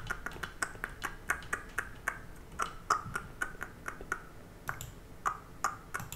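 Faint computer mouse clicking, a quick irregular run of short clicks at about four a second, with a brief pause a little after four seconds.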